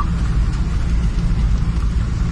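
Car driving along a snow-covered road, heard from inside the cabin: a steady low rumble of engine and tyres.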